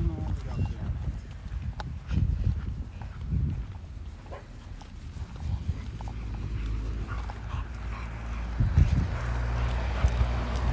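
Footsteps on a concrete sidewalk and a leashed dog moving about and sniffing the grass, with scattered short clicks over a low steady rumble.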